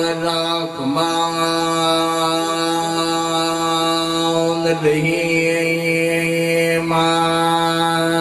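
A man's voice chanting, holding one long, steady note with a brief break about a second in and a slight shift in tone about five seconds in.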